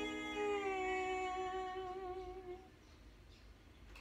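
The last chord of the song on an electronic keyboard ringing out and fading, with a man's voice softly holding the final note over it. Both die away about two and a half seconds in, leaving it faint.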